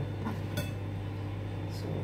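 A steady low hum runs throughout, with one sharp click a little over half a second in, while leafy greens are handled over a plastic cutting board.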